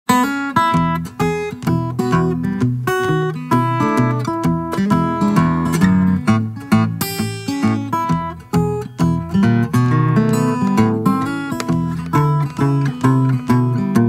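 Instrumental introduction of a country-blues song on acoustic guitar: a steady run of plucked notes over a moving bass line, with no singing yet.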